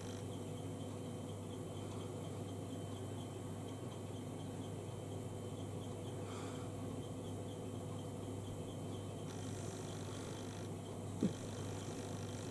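Faint soft brushing of a small eyeshadow brush worked over the eyelid, over a steady low electrical hum.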